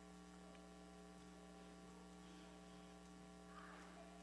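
Near silence with a faint, steady electrical mains hum, a set of fixed low tones from the recording setup. A soft rustle comes just before the end.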